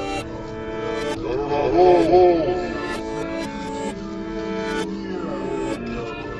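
A sample-based beat playing back from FL Studio: held melodic notes over sharp percussive hits, with swooping up-and-down pitch glides about two seconds in. It is the section built with reversed sounds for variation.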